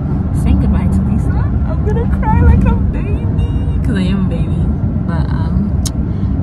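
Steady low rumble inside a car's cabin, with a woman's voice coming and going over it.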